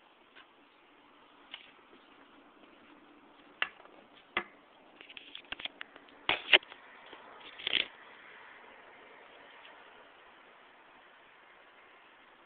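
Handling noise from a handheld camera being moved and set down on a stone tabletop: a run of sharp knocks and scrapes between about three and a half and eight seconds in, loudest a little past six seconds, over a faint steady hiss.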